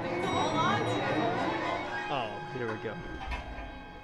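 Voices over background music with long held tones, and a brief low rumble a little past three seconds in.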